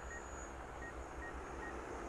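Faint, steady hum of a DJI Agras T20 spray drone's rotors as it hovers and turns some way off, with a few short faint beeps recurring.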